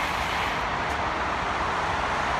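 Steady rushing background noise with a low rumble, the ambience of a parking garage.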